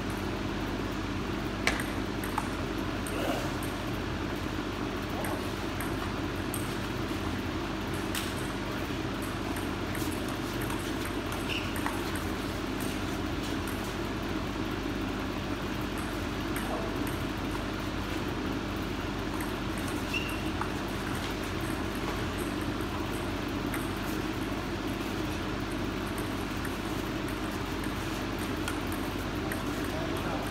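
Table tennis ball clicking off paddles and the table at scattered moments in play, over a steady hum of room noise.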